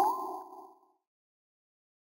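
Ding-like chime of an end-logo sound sting: two steady tones ring on and fade out in under a second.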